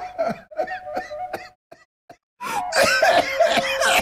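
A song with a singing voice: short sung phrases, a break of under a second about halfway through, then the music comes back with a long held note.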